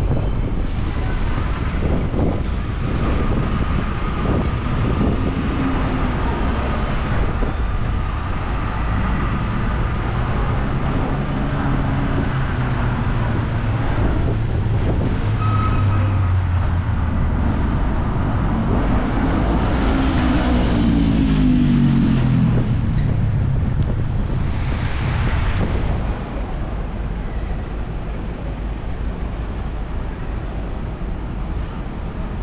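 City street traffic: bus and car engines running and passing close by, with a steady rumble throughout. About two-thirds of the way in, one engine's pitch falls as it goes past. The traffic gets quieter near the end.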